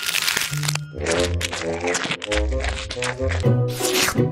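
A crunchy bite into a crisp waffle cone in the first second, followed by background music with a steady beat.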